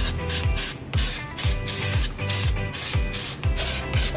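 Aerosol brake cleaner hissing as it is sprayed onto a brake disc hub, under background music with a steady beat.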